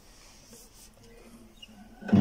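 A quiet pause with faint handling noise and a light click as a hand moves onto a classical guitar's neck and settles into a chord shape.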